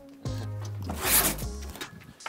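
Packing tape being ripped off a cardboard shipping box: a short, loud tearing sound about a second in.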